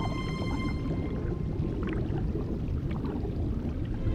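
Low underwater rumble with faint gurgles, as a held chord of soundtrack music fades out in the first second.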